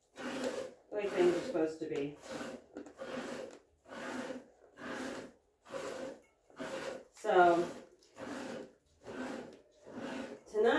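A goat being hand-milked: streams of milk squirting into a metal pail in a steady rhythm of about one hissing squirt a second.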